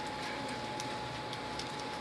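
Room tone through a church PA during a pause in speech: a steady hiss with a faint, thin, steady high tone and a few faint ticks.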